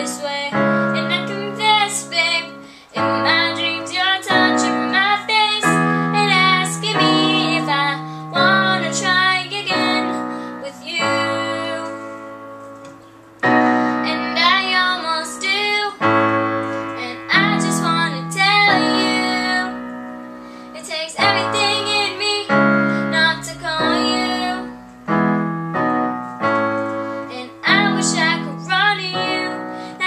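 A girl singing a slow ballad to her own accompaniment on a digital piano, playing held chords under her voice. Around twelve seconds in the piano and voice die away almost to nothing, then start again a second or so later.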